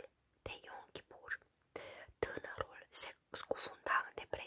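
A woman reading aloud in a hoarse whisper, her voice nearly gone from laryngitis, with short pauses between phrases.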